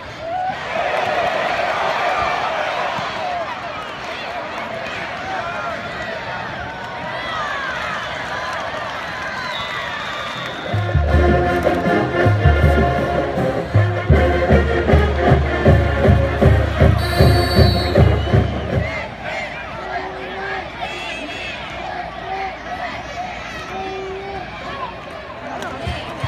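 A football stadium crowd cheers loudly for a few seconds, then settles into a steady noise of voices. About eleven seconds in, a marching band plays loudly for some eight seconds, its bass drums beating two or three times a second, then stops.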